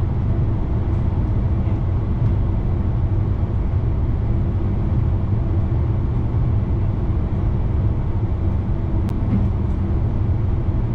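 NS VIRM double-deck electric intercity train running at speed, heard from inside the driver's cab: a steady, even, low rumble.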